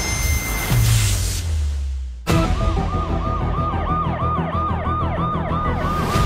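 A trailer title-card sound effect: a low pitch sliding down with a bright ringing tone above it. About two seconds in, a sudden cut brings in a siren wailing in a fast yelp, rising and falling about three to four times a second, over a low steady backing.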